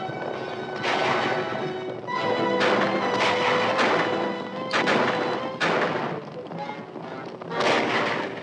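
Dramatic orchestral film score with held brass and string notes, punctuated by about seven rifle and pistol shots spaced a second or so apart in a gunfight.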